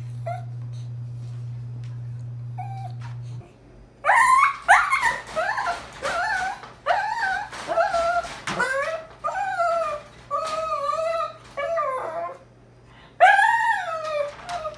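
A puppy shut in a wire crate whining in a long run of high, wavering cries that rise and fall in pitch, starting about four seconds in. Before that, a steady low hum runs and then stops.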